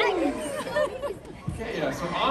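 Actors on a stage talking in a large theatre hall, with audience chatter underneath.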